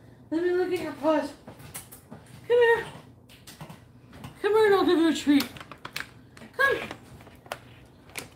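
Wordless vocal sounds: about five short pitched calls that bend up and down, some long, some brief, with a few sharp clicks between them.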